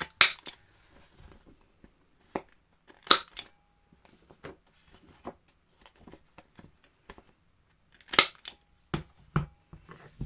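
Hand-held corner rounder punch snapping through the corners of a paper journal cover on its largest radius: three sharp, loud clacks, at the start, about three seconds in and about eight seconds in, with small clicks and faint paper handling between.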